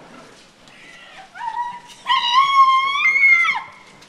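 A person's high-pitched, drawn-out wail: a short cry, then a louder held cry of about a second and a half that steps up in pitch before breaking off.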